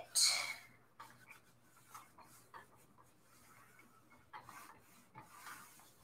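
A steam iron sliding over a sheet of coffee-dyed paper: a faint papery rubbing with scattered soft taps. A brief vocal sound comes at the very start.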